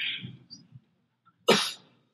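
A person coughing in a quiet room: a short rasp right at the start, then one sharp, louder cough about a second and a half in.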